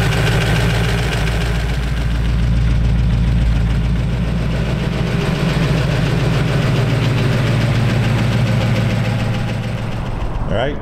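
Supercharged 258 cu in Ford flathead V8 with Ardun overhead-valve heads and a S.C.O.T. blower, running steadily at idle in a 1932 Ford roadster.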